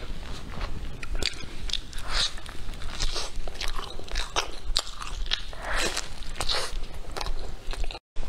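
Close-up eating sounds of a crisp golden flatbread being torn by hand and chewed: a steady run of small crackles and crunches.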